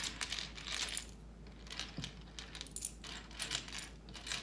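Loose plastic LEGO pieces clicking and clattering against each other and the tray as a hand sifts through the pile, an irregular scatter of small sharp clicks.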